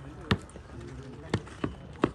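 Three short, sharp knocks: one about a third of a second in, then two close together past the middle, over faint background voices.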